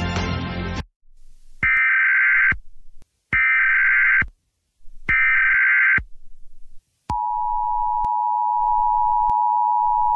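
Emergency Alert System tones: three one-second bursts of digital data tones (the SAME header), then from about seven seconds in the steady two-tone EAS attention signal.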